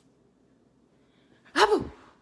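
Near silence, then about a second and a half in, one short, loud vocal burst from a woman that rises and falls in pitch.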